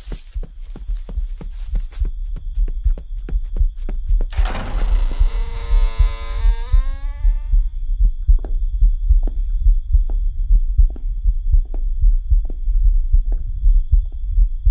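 Intro sound design: a deep, throbbing bass pulse like a heartbeat under a steady high electronic hum and rapid clicking. A swelling whoosh with a shifting pitch rises about four seconds in and fades out by about seven and a half seconds.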